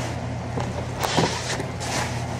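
Handling noise of a white plastic laundry basket being picked up: rustling and scraping with a sharp knock about a second in. A steady low hum runs underneath.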